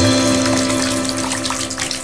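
The tail of a radio ad jingle: a held musical chord slowly fading out over a running-water sound effect.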